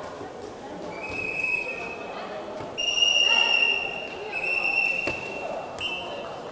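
A sports whistle blown in four steady, high blasts of around a second each, the second the loudest, as a rally ends and the point is called. A single sharp ball strike sounds about five seconds in, over a low crowd murmur in an echoing hall.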